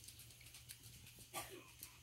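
Near silence: room tone with a steady low hum, a few faint clicks, and one brief faint voice-like sound about one and a half seconds in.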